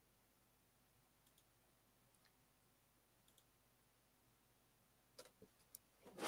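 Near silence broken by faint paired clicks, then a few louder clicks near the end: computer mouse clicks while a video is being opened.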